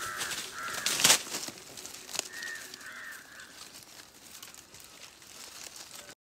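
Crows cawing: two pairs of short caws, the second pair about two seconds after the first. A loud crackling rustle, like leaves and twigs, comes about a second in and is the loudest sound.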